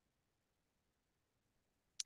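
Near silence: a pause in the lecture, with only a faint noise floor.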